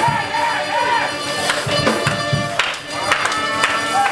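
Live church praise music: drums and cymbals struck repeatedly, with voices singing and calling out over the music.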